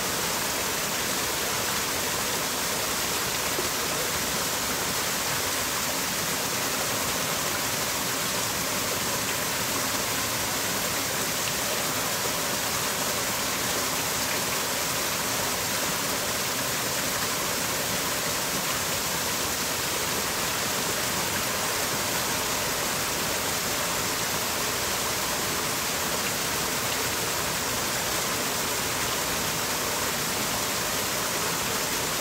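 Small waterfall pouring over a rock ledge into a shallow stream pool, a steady rushing noise with no break.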